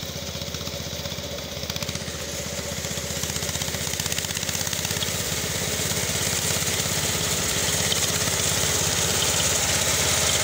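Engine of a motorized rice reaper-binder running steadily, growing gradually louder, with a brighter hiss building in the second half.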